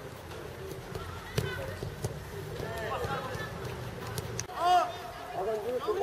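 Young footballers' voices calling and shouting across an outdoor pitch, with one loud high shout about three-quarters of the way through. There are a couple of sharp thuds of a football being kicked.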